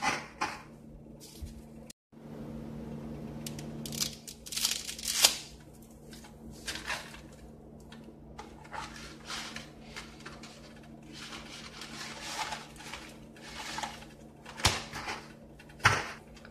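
Dry spaghetti being snapped in half by hand and dropped into a pot of water: a run of sharp cracks and rustles, the loudest about five seconds in, over a low steady hum.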